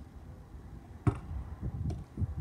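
A basketball being handled and bounced: one sharp thump about a second in, then a few softer thumps near the end.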